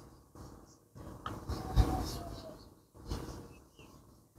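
A putter striking a golf ball once, a single short knock about two seconds in, over a faint outdoor background.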